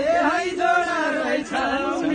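Several voices singing a Nepali folk song together, in a chant-like unison with rising and falling lines and little or no drumming under it.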